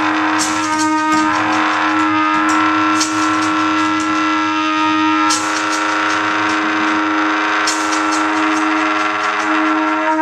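Free-improvised music for tenor saxophone, bass clarinet, trumpet and cello: long sustained tones layered over a steady held low note, with sharp bright accents every two to three seconds.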